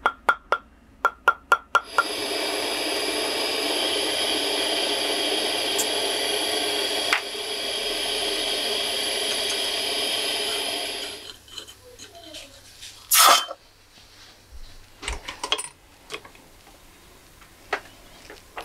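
About seven quick clicks, then a jeweller's gas soldering torch hissing steadily for about nine seconds before it fades out. A short loud burst and a few light taps follow near the end.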